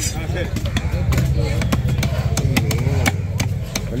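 Knife striking a wooden chopping block as fish is cut, giving a run of sharp, irregular knocks, several a second.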